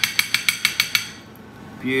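Metal spoon clicking rapidly against a ceramic plate as it spreads a spoonful of sauce: a quick run of ringing clicks, about seven a second, that stops about a second in.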